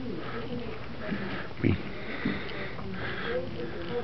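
Background murmur of other people's voices in the room, with one word spoken close to the microphone a little before halfway.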